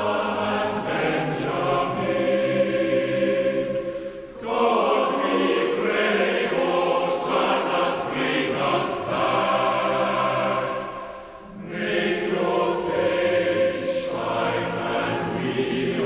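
Choir singing slow, held chords in long phrases, with short breaks between phrases about four and eleven and a half seconds in.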